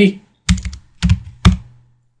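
Computer keyboard being typed on: a quick run of key clicks about half a second in, a second cluster at about one second, and one last keystroke shortly after.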